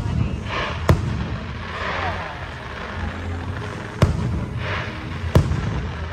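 Aerial fireworks shells bursting overhead: three sharp bangs, about a second in, about four seconds in and near the end.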